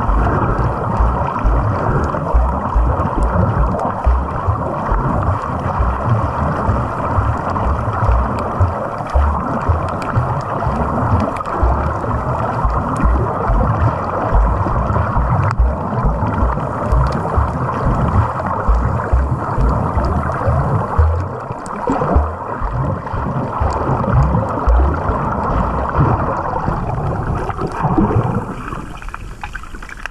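Muffled water noise picked up by a camera held underwater: a steady churning hiss with irregular low thumps from water moving against the camera, quieter for the last two seconds.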